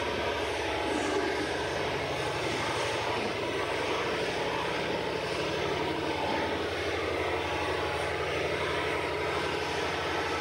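A steady low mechanical drone with a fast even pulse, under a constant hiss, unchanging throughout.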